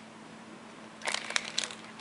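Clear plastic packaging of a cling stamp set crinkling and clicking as it is handled and put down, starting about halfway through.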